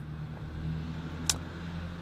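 A steady low motor rumble with a faint hum, and one short click a little past the middle.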